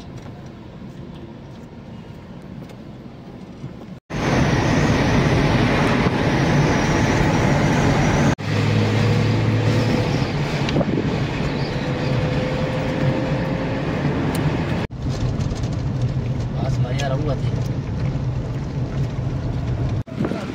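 Engine and road noise inside a moving car's cabin: a steady drone with a low hum. It is quieter at first and jumps louder about four seconds in, then changes abruptly twice more.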